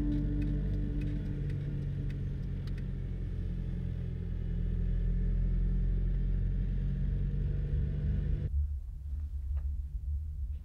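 Steady low rumble of a moving car heard from inside the cabin, cutting off suddenly near the end.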